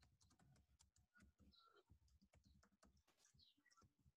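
Very faint computer keyboard typing: a run of soft, irregular key clicks.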